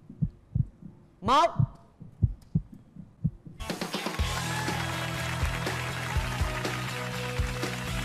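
A heartbeat sound effect beats under the countdown, about two to three low thumps a second. About three and a half seconds in, it gives way suddenly to louder celebratory music with a steady beat, the show's cue that the couple has been matched.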